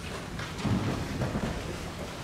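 A congregation sitting down in wooden pews: shuffling and rustling of clothes, with several soft low thumps and bumps in the middle.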